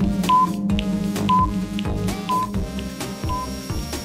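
A quiz countdown timer: a short high beep about once a second over steady background music.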